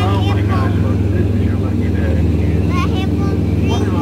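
Tour boat's engine running steadily under way, a loud, low drone.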